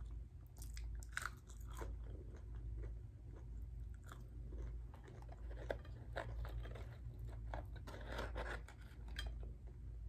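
Close-up chewing and crunching of crisp hand-breaded fried chicken. Crackly bites come in clusters about a second in and again from about five to nine seconds in, over a steady low hum.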